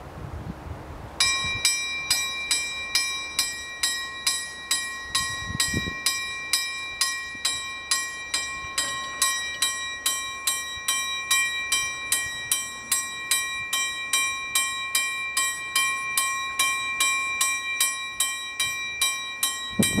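Level crossing warning bell starting about a second in and ringing in rapid, even strokes, about two and a half a second, as the crossing's barriers come down: the signal that a train is approaching.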